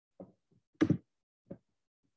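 A few short knocks, the loudest a quick double knock a little under a second in, with a fainter one at about a second and a half.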